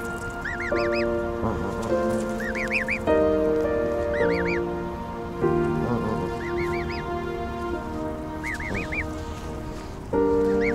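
Background music with slow held chords. Over it come short peeping calls from Canada goose goslings, in quick runs of three or four about every two seconds.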